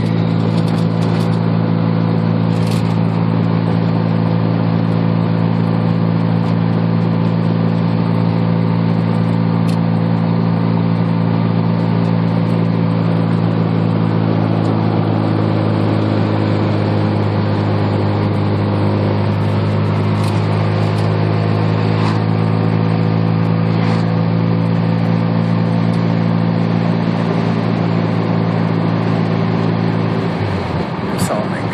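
1987 Mazda RX-7's naturally aspirated 13B two-rotor rotary engine, running through headers and straight pipes, cruising at a steady engine speed. It is a constant, even drone heard from inside the cabin.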